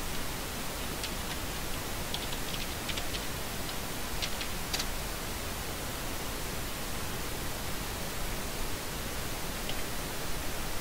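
Steady hiss of background noise, with a few faint computer-keyboard keystrokes scattered through the first five seconds and a single click near the end.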